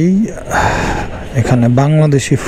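A man speaking, broken near the middle by a short, loud, breathy rush of air, like a gasp or a heavy breath.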